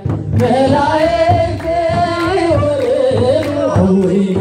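An Ethiopian Orthodox hymn (mezmur) sung by a congregation, a long held melodic line with a wavering pitch, over a steady percussion beat. A new sung phrase begins about half a second in after a brief break.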